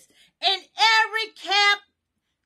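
A woman singing in a high voice, a few short held notes that break off suddenly near the end.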